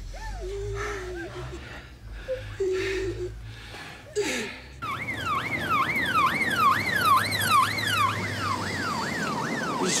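An emergency-vehicle siren wailing in quick rising-and-falling sweeps, about two a second, starts sharply about halfway through. A low steady hum comes before it.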